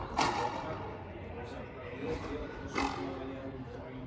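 Sharp strikes of a frontenis rubber ball on racket strings and against the frontón wall during a rally, the loudest just after the start and near three seconds in, with men's voices in between.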